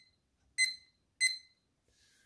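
Two short electronic beeps, about two-thirds of a second apart, from an Ambient Weather WS-2902A display console. Each beep confirms a press of its front button, which steps the outdoor temperature readout through dew point, heat index and wind chill.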